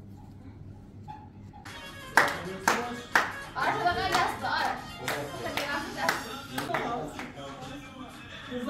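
Hand clapping in a steady rhythm, about two claps a second, starting about two seconds in, with voices over it.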